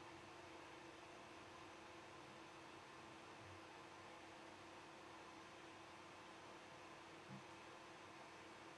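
Near silence: room tone, a steady faint hiss with a low hum.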